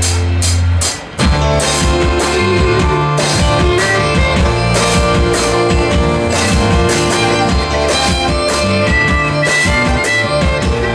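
Live band playing an instrumental passage on acoustic guitar, electric bass, drum kit and fiddle. A held note stops about a second in, and after a brief dip the band comes back in with a steady drum beat.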